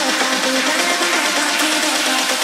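Electronic dance track without vocals: a synth melody stepping between short notes over a high hiss, with no bass or kick drum under it.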